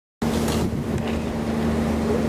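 A harbour tour boat's engine running with a steady, even hum, heard from the open deck with wind and water noise around it.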